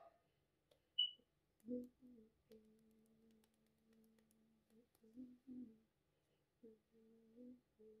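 A person humming faintly: a wordless tune in long held notes and short phrases. A single short high-pitched chirp comes about a second in.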